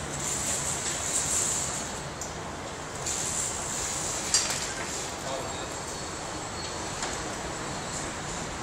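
Steady rumbling and hissing background noise on an open, unglazed high-rise building-site floor, with one sharp click about four seconds in.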